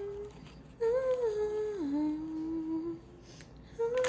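A woman humming a slow tune in a few held notes. The tune steps down in pitch about halfway through, and she breaks off near the end.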